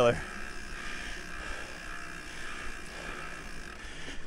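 Mountain bike riding along a dirt forest singletrack: steady rolling noise with a faint, even high buzz and no distinct knocks.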